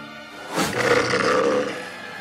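Cartoon sound effect of an animal growling with bared teeth, a loud growl setting in about half a second in, over background music.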